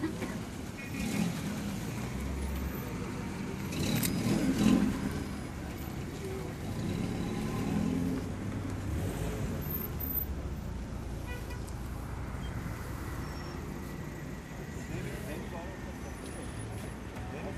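Road traffic going by: the steady low rumble of car engines and tyres, swelling louder about four seconds in, with people's voices in the background.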